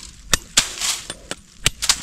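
A long-bladed knife chopping at a freshly cut wild bamboo shoot: about five sharp strikes spread unevenly through the two seconds as the blade cuts into the shoot's sheath. A brief rustle of the husk comes between the early strikes.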